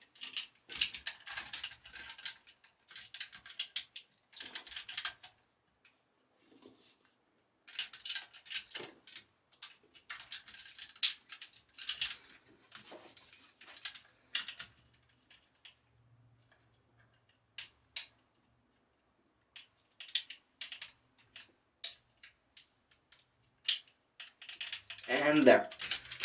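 Hard plastic parts of a Transformers Studio Series Devastator figure clicking and clacking as they are handled and small fill-in pieces are pegged into their slots. The clicks come in irregular bursts separated by short pauses.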